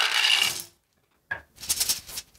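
About sixty small wooden dinosaur pieces poured from a tray into a cloth drawstring bag, clattering together for under a second. A click and lighter rustles of the cloth bag being handled follow near the end.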